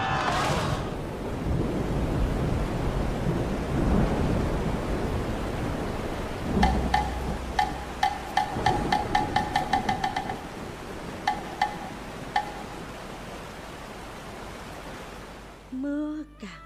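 Theatrical thunderstorm sound effect: a steady rumbling wash of thunder and rain. From about six seconds in, a run of sharp pitched percussion strikes speeds up, then breaks off into a few single strikes near the end.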